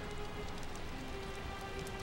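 Quiet, steady hiss of background ambience under faint held notes of soft film score, in a pause between lines of dialogue.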